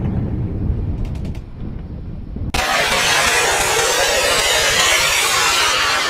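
Rocket-launch sound effects: a low rumble dies away, with a few faint clicks, and then about two and a half seconds in there is an abrupt cut to a loud, steady rushing hiss of a missile in flight.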